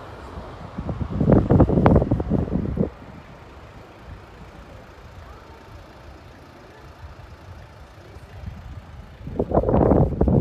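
Steady low rumble of a vehicle travelling along a street, with two louder stretches of noise: one about a second in lasting about two seconds, and one starting near the end.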